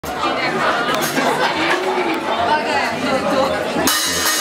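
Audience chatter, many voices overlapping. Just before the end a rock band comes in suddenly with electric guitars and drums.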